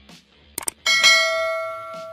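Subscribe-animation sound effect: two quick clicks, then a single notification-bell chime that rings out and fades over about a second and a half.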